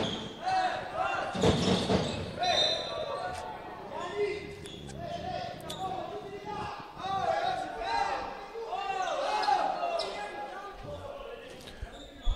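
A handball being bounced on a wooden indoor court during live play, with sharp impacts and voices calling out, all reverberating in a large sports hall.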